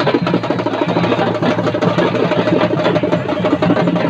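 Fast, dense drumming with a steady held tone running over it, loud and continuous, the music of a temple festival procession.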